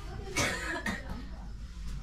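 A person coughing: a harsh burst about half a second in and a smaller one just after, in a small room.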